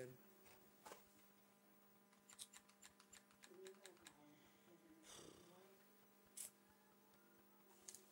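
Near silence with a steady low hum. About two and a half seconds in comes a quick run of faint clicks, with a few soft knocks later, from handling a plastic spring-powered G36C airsoft gun.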